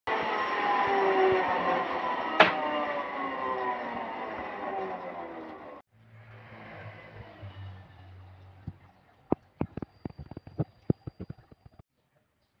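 Woodshop machine whine, slowly falling in pitch as it runs down, with one sharp knock about two and a half seconds in; it cuts off abruptly near six seconds. Fainter machine noise with a low hum follows, then a run of irregular sharp wooden clicks and knocks in the last three seconds.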